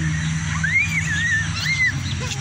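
A high whistle that glides up and down in a short tune-like phrase, over a steady low hum.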